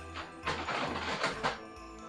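Background music with a steady low bass line, under about a second of crinkly rustling from a carrier bag being rummaged through, starting about half a second in.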